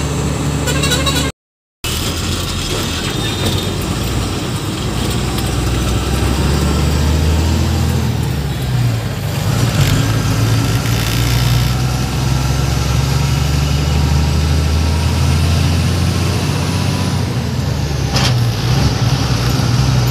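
Truck engine running under way, heard from inside the cab: a steady low drone with road noise, cut off briefly about a second and a half in.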